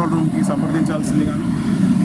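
A man speaking over a steady low rumble.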